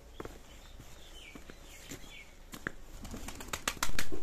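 Birds: a few short chirping calls, then a quick run of sharp clicks near the end, like wings flapping.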